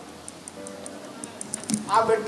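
Soft background music in a pause between a man's amplified speech: a held note with faint, evenly spaced ticking several times a second. The voice comes back near the end.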